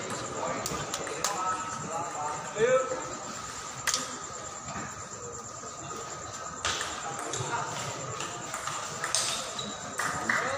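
Sharp clicks of a table tennis ball struck by bats and bouncing on the table, a handful over several seconds, over a steady background of spectators' chatter.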